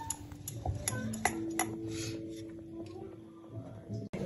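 Kitchen utensils clicking and knocking lightly while dough is rolled out. One strike about a second in leaves a steady metallic ring that lasts over a second.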